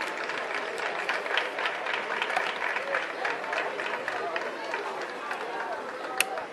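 Scattered hand clapping over indistinct chattering voices, the claps coming thick and uneven throughout.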